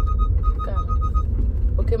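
Car cabin noise while driving: a steady low road and engine rumble. A rapid, evenly pulsed electronic beep sounds over it and stops a little over a second in.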